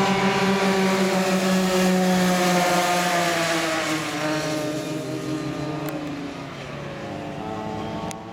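Go-kart engines running at high revs as two karts race past. Their buzz is steady at first, then from about three seconds in it slowly drops in pitch and fades as the karts pull away.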